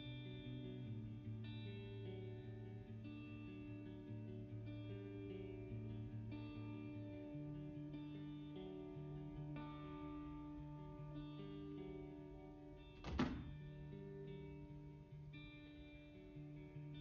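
Background music played on guitar, with plucked notes changing slowly. One brief knock about thirteen seconds in.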